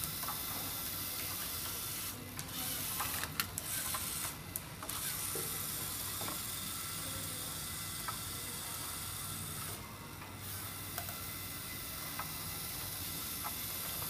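Small gear whir of a LEGO Mindstorms EV3 robot's drive motors over a steady background hiss, with scattered small clicks.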